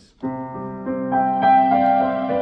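Yamaha TransAcoustic upright piano playing a layered digital piano-and-strings voice through its soundboard. A held chord starts a moment in, and further notes are added over it so that the sound thickens and sustains.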